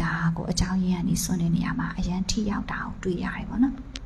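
Speech: a woman talking into a handheld microphone.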